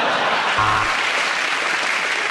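Studio audience applauding and laughing, a steady clatter of clapping.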